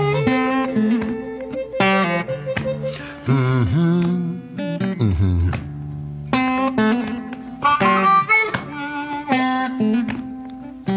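Blues harmonica playing held and bending phrases over acoustic guitar in an instrumental break between sung lines.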